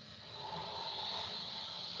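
Faint, steady hiss of background noise: room tone picked up by a microphone.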